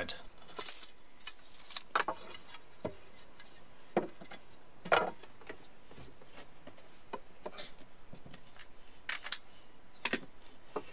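Scattered sharp clicks and knocks from handling tools and timber during carpentry work, irregularly spaced, with the two loudest knocks about four and five seconds in.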